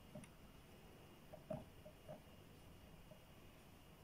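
Near silence with a few faint taps of small plastic containers being handled, the loudest about a second and a half in.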